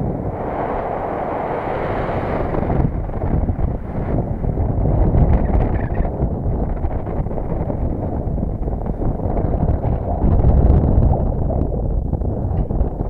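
Wind buffeting the microphone of a head-mounted camera: a loud, gusty low rumble that swells about five seconds in and again near the end.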